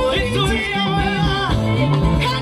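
Church choir singing a worship song into microphones, voices wavering on held notes, over an instrumental backing with a stepping bass line.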